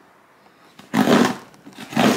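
A delivery package being torn open by hand: two loud ripping sounds about a second apart.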